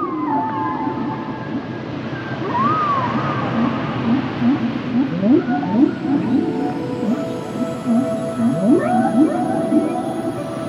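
Whale calls: many short upward-sweeping moans, about one or two a second, with a higher arching call about three seconds in, set over ambient music with sustained tones.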